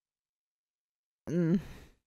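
Silence, then about a second and a quarter in, a person's short voiced sigh with a wavering pitch that trails off into breath.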